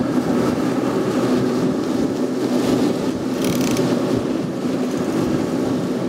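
Outboard motors running at high trolling speed, a steady engine hum under the rushing wake and wind. A short burst of higher hiss comes about halfway through.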